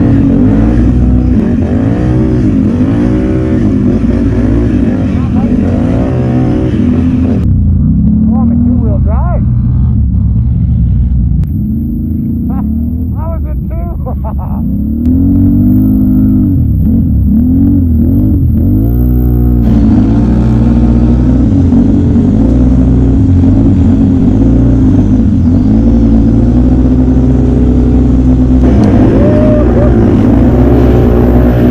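Can-Am Renegade XMR 1000R ATV's V-twin engine revving up and down over and over as it works through brush. The sound turns duller for a stretch in the middle.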